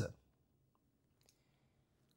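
A man's spoken word trailing off at the very start, then a quiet room with a couple of faint clicks about a second in.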